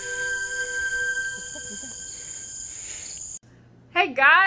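Steady high-pitched insect chorus in summer woods, one even, unbroken sound. Soft music notes fade out under it in the first second or so, and it cuts off abruptly about three and a half seconds in.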